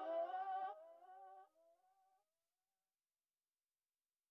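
The last held, wavering note of the song, a voice-like hum, fading out within about the first second. A faint trace dies away by about two seconds in, then silence.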